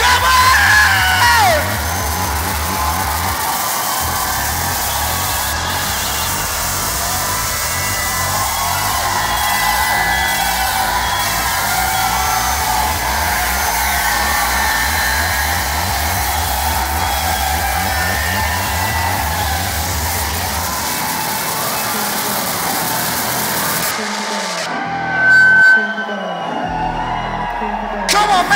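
Live electronic punk music through a PA: a pounding, evenly pulsing bass beat under a dense wash of distorted noise, with crowd yells mixed in. The beat drops out about three-quarters of the way through; near the end the noise cuts away, a short loud tone sounds and a low drone holds.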